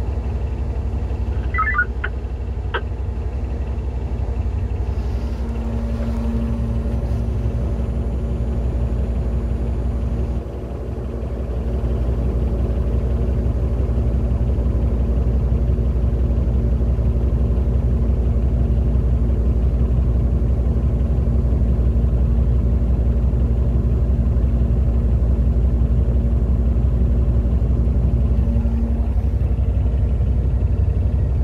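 Cat D11T dozer's diesel engine running steadily, heard from inside the cab as a low rumble with a steady hum over it. A couple of brief chirps about two seconds in; about ten seconds in the level dips briefly, then runs a little louder.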